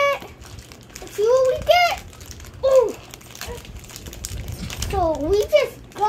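Children's voices in three short high-pitched vocal sounds, with plastic wrapping crinkling as a small toy package is pulled open.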